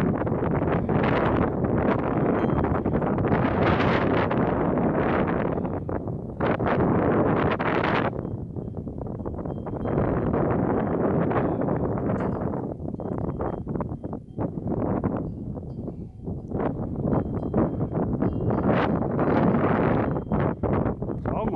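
Wind buffeting the camera's microphone in uneven gusts, easing for a while about eight seconds in and again around fourteen to sixteen seconds.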